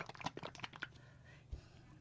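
Plastic squeeze bottles of acrylic pouring paint being picked up and shaken: a quick run of faint clicking rattles, then a single soft knock about a second and a half in.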